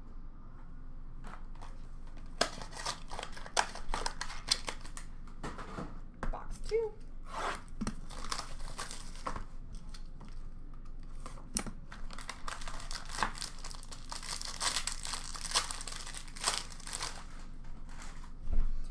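Plastic shrink-wrap on a trading-card box being torn and crinkled, a dense run of crackling that starts about two seconds in and stops shortly before the end.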